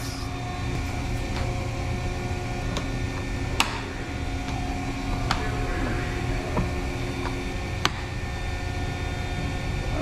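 A steady low machinery drone with a few thin humming tones, broken by about half a dozen sharp clicks as the fluorescent fixture's cover is pressed and snapped into place along the housing.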